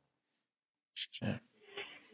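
Dead silence for about a second, then a short sharp breath and a brief grunted "yeah" from a man.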